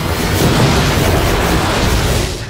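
Sci-fi film sound effect of a loud, sustained, rumbling explosion: a dense roar with a deep low end.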